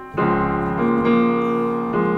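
Piano sound from a digital keyboard: a chord struck just after the start and held, with some of its notes moving to new pitches about a second in. The chord is a D-flat major seventh sharp eleven, part of a descending chord progression.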